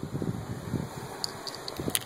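Wind buffeting the camera's microphone, a gusty low rumble, with a few light ticks near the end.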